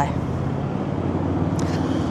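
Road traffic passing close by: a steady rush of vehicle noise with a low engine hum.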